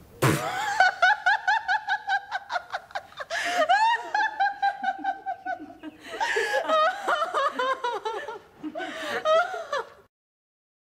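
A woman laughing heartily in quick repeated ha-ha bursts, with a breath drawn between fits about three and six seconds in; it stops suddenly.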